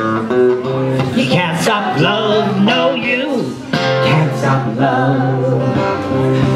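Live acoustic guitar strummed steadily under singing voices.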